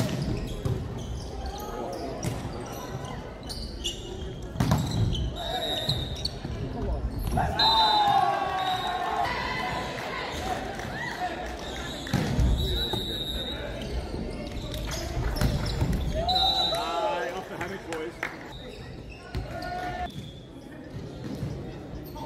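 Indoor volleyball play: the ball being struck and landing, sharp knocks echoing in a large hall, with players' shouts breaking in twice.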